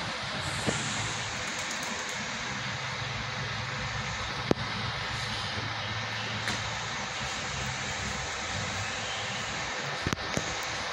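A coach's diesel engine running as the bus approaches slowly, a steady low drone under outdoor noise. A sharp click about four and a half seconds in.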